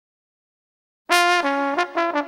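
Instrumental music starting about a second in: a horn plays a phrase of several quick notes, with nothing else under it.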